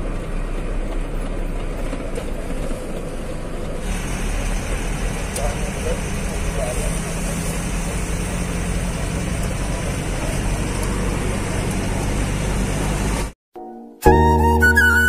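Truck engine and road noise heard from inside the cab while driving: a steady low drone under a broad hiss. It cuts out suddenly just before the end.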